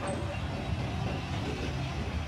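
A van driving past close by: a steady low rumble of engine and tyres on the street.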